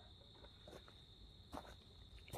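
Near silence: a steady, faint high chirring of crickets, with a few faint clicks from hands on the headlight assembly.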